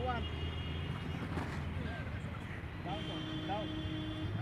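Outdoor ambience: distant voices and short rising-and-falling calls over a steady low hum, with a thin steady tone near the end.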